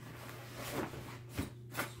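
Faint rustling of a fabric blind bag being handled and its flap opened, with two small clicks in the second half.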